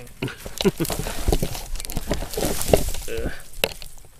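A person laughing over the crackling and snapping of dry, dead twigs and branches being handled and broken by hand.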